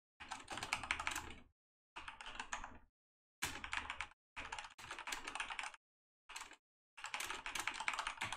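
Typing on a computer keyboard: six quick runs of keystrokes, each about a second long, with short silent pauses between them.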